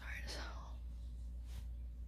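A woman's soft, breathy, whispered vocal sound that slides down in pitch in the first half second or so. After it there is quiet room tone with a steady low hum.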